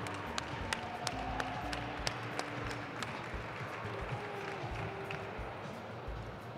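Scattered audience applause with individual claps standing out, over soft background music with held notes.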